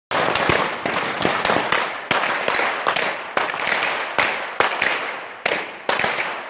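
A rapid, irregular series of loud sharp cracks, about three a second, each followed by a short echo, over a continuous dense noise.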